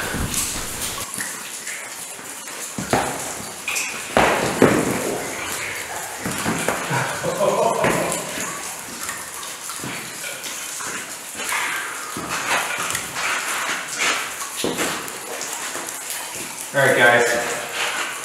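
Boots knocking and scraping on a thick, slippery ice floor, with several sharp knocks about three to five seconds in. A man's voice breaks in with short exclamations but no words, most clearly near the end.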